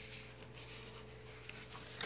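Faint rustling and rubbing of paper as a paperback coloring book is handled and turned over in the hands.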